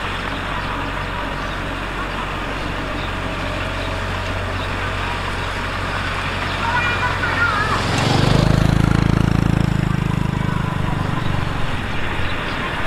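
Small crawler bulldozer's diesel engine running steadily as it pushes and spreads soil. From about 8 s a louder, deeper engine rumble swells for about three seconds and then fades, as a motorcycle comes up close.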